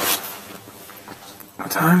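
A short burst of rustling or zipping close to the microphone at the start, fading to a faint rustle, then a man starts speaking near the end.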